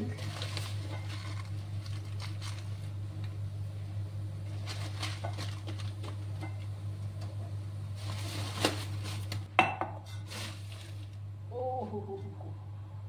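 Kitchen utensils and dishes clinking and knocking as they are handled at a counter, with two sharp clanks about a second apart near nine seconds in, over a steady low hum.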